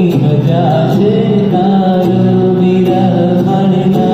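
Live acoustic guitar and dholak music, the dholak keeping a steady beat under the strummed guitar, with a sung melody in long, wavering held notes.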